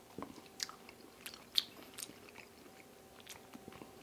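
Faint mouth sounds of someone chewing a spoonful of jelly with nata de coco: scattered soft, wet clicks and smacks.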